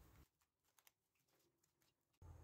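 Near silence, with two faint ticks a little under a second in.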